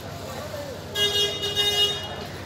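A vehicle horn honks once, a steady pitched tone lasting about a second, starting about a second in, over general street noise.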